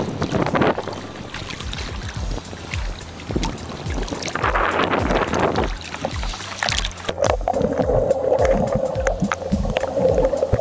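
Seawater sloshing and splashing around a waterproof camera at the surface, with swells of water noise twice, over even low thumps about three a second. A steady hum comes in about seven seconds in, as the camera goes under.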